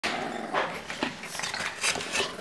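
English bulldog puppy and its mother play-fighting: dog breathing and vocal noises from the tussle come as about four short noisy bursts.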